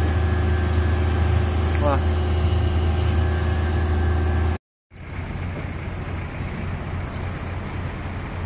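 Heavy machinery engine running steadily with a low, even hum. About four and a half seconds in the sound cuts out for a moment, then the engine hum continues more quietly.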